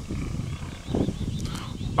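Wind buffeting the microphone of a handheld camera outdoors, heard as a low, uneven rumble.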